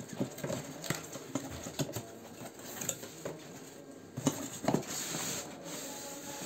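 Cardboard box being handled and opened by hand: irregular taps, rustles and scrapes, with a cluster of louder knocks about four to five seconds in, then a brief sliding scrape.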